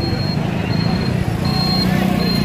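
A motor vehicle engine running close by, growing slightly louder. A faint high-pitched beep repeats about every 0.7 seconds.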